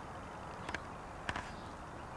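Steady outdoor background hiss with two short knocks about half a second apart near the middle.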